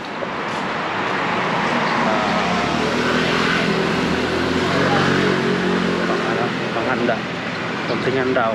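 A road vehicle driving past on the street, its engine and tyre noise building over about two seconds, staying loud, and easing off near the end.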